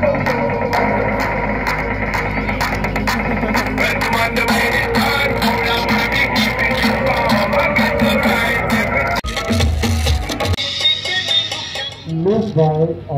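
Music with a steady beat played over a DJ's PA loudspeaker, cutting off abruptly about nine seconds in.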